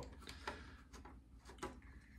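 Faint, irregular small clicks of a hand screwdriver turning out the screws that hold a die-cast model car to its display base.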